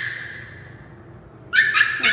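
A small chihuahua whining in a high, thin cry, twice: once fading over the first second, and again near the end. It is the dog left behind at the door, crying to come along.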